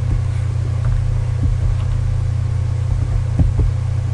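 A steady low hum, with a couple of faint clicks.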